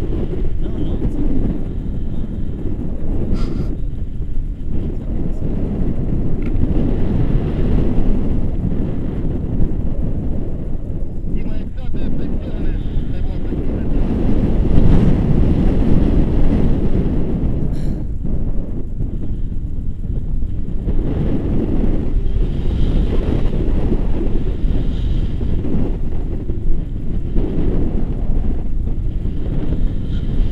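Wind buffeting the camera microphone during a tandem paraglider flight: a loud, low rumble that swells and fades in gusts.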